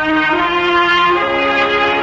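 Orchestral music bridge from a radio drama's studio orchestra: sustained held chords that move to a lower chord a little over a second in, marking a change of scene.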